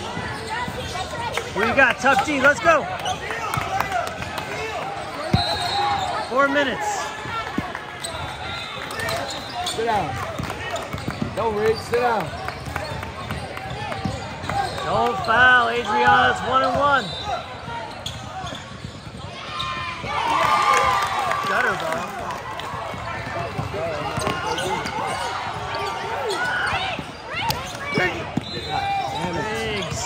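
Basketball bouncing on a hardwood gym floor during play, with spectators and players talking and calling out in a large gym.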